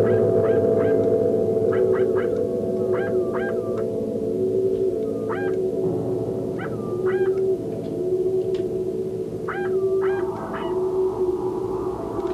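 Ambient electronic drone music: layered low sustained tones with a slowly pulsing middle tone, overlaid by clusters of short chirping calls that swoop up and fall back, recurring every second or two.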